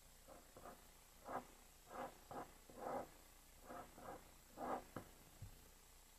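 Pen drawing on paper: a series of about nine short strokes, some a little louder than others. A single soft low knock comes near the end.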